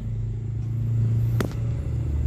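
A low steady rumble, with a single sharp click about one and a half seconds in.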